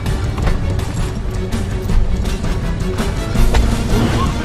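Action film score with heavy low-end, mixed with fight sound effects: repeated sharp hits and thuds several times a second.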